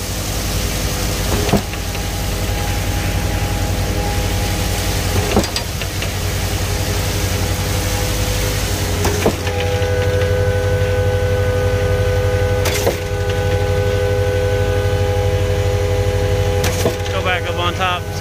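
Concrete boom pump truck running hard while pumping lightweight concrete: a steady engine and hydraulic drone, with a sharp clunk about every four seconds as the pump changes stroke. About halfway through, a steady whine from the hydraulics joins in.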